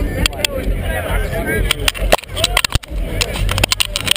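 A handheld camera being jostled and handled: irregular knocks and rubbing right on the microphone, coming thicker in the second half, over a steady low rumble and faint crowd voices.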